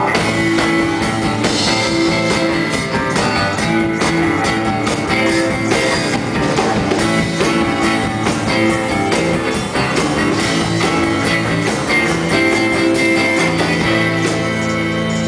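Live band playing an instrumental passage of a psychedelic folk-rock song: acoustic guitar strummed over a drum kit, loud and steady.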